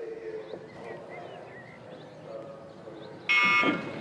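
Regatta start signal: one short, loud electronic horn blast about three seconds in, the signal that starts the race. It comes after a few seconds of quiet course ambience.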